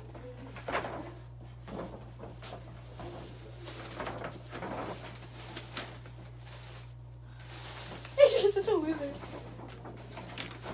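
Tissue paper rustling and crinkling in short bursts as a gift is pulled out of a paper gift bag. Near the end comes a loud, drawn-out vocal exclamation that falls in pitch.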